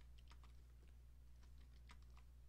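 Near silence with a low steady hum and several faint, scattered computer keyboard clicks.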